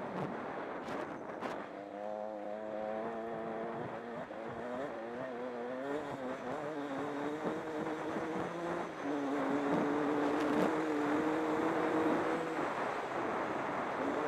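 Honda CR125's two-stroke single-cylinder engine, heard from the rider's own helmet, revving up and down as the bike is ridden. From about nine seconds in it holds a steadier, higher note.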